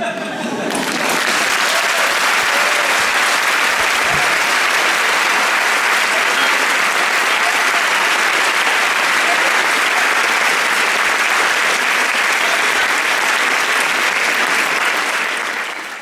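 Audience applauding, building over the first second, then steady, and fading out at the very end.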